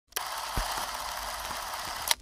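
Vintage film projector running: a steady mechanical running noise that starts abruptly, with a few faint low thumps.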